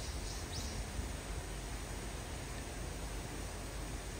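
Steady outdoor background noise, an even hiss over a low rumble, with a few faint high chirps in the first second.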